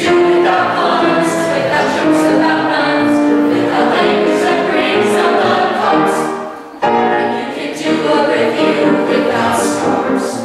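Mixed-voice vocal ensemble singing together in harmony. The sound thins out briefly about six and a half seconds in, then the voices come back in together all at once.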